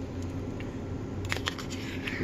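Metal spoon scraping tuna out of an opened tin can, with a few light clicks of the spoon against the can about a second and a half in, over a low steady hum.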